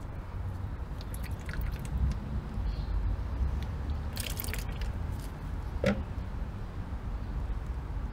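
Gasoline draining from the injectors of a removed fuel rail into a plastic tub. It gives a few short taps and splashes, about four seconds in and again near six, over a steady low rumble.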